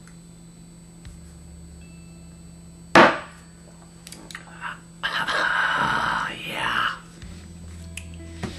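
A man's reaction to downing a shot of liquor: a single sharp knock about three seconds in, then a long, rough breath out from about five to seven seconds as he winces at the burn.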